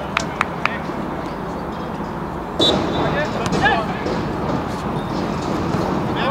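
Amateur football on a grass pitch: a few sharp knocks of the ball being kicked in the first second, then players shouting from about halfway on, over steady outdoor background noise.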